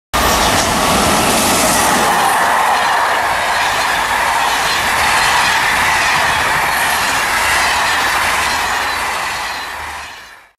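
A train of SNCF Corail passenger coaches passing at speed: a steady, loud rolling noise of wheels on rail. It fades near the end as the last coach goes by.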